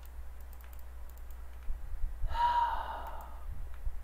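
Scattered faint clicks of a computer keyboard and mouse. About two seconds in comes a short, breathy sound. A steady low hum runs underneath.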